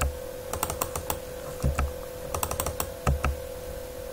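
Computer keyboard keys pressed in short, irregular clusters as text is deleted in an editor, with a couple of duller knocks among the clicks and a faint steady hum underneath.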